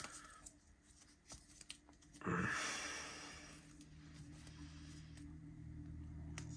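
Faint handling noises with a few small clicks, and one louder rustling burst about two seconds in that fades away.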